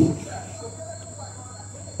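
Quiet room tone: a steady high-pitched whine and a low hum, with faint rubbing of a marker writing on a whiteboard.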